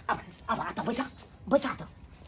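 Short bursts of a person's voice, speaking in brief utterances with gaps between them.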